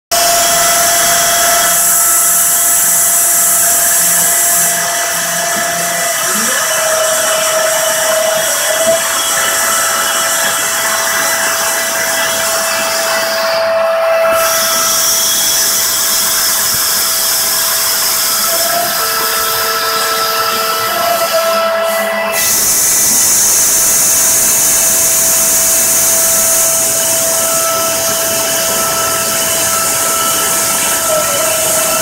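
CNC router spindle running at high speed while the cutter mills a carbon fibre sheet: a steady whine over loud hissing cutting noise. The hiss falls away briefly twice.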